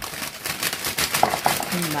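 Crushed Doritos shaken out of the chip bag into a glass baking dish: the bag crinkles and the crumbs fall in a dense run of fine clicks. A voice comes in near the end.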